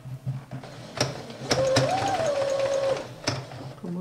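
Small domestic electric sewing machine stitching: a few slow stitches, then a fast run of about a second and a half with the motor whine rising and settling, stopping about three seconds in. Sharp clicks come just before and just after the run.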